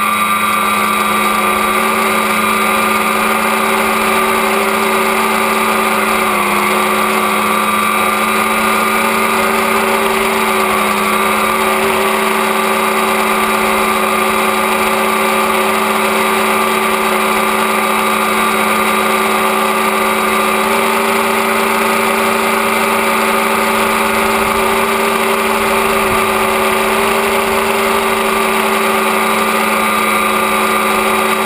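Tricopter's three electric motors and propellers running in flight, recorded from the camera on board: a steady whine of several pitches held together, with a brief dip in pitch about six seconds in.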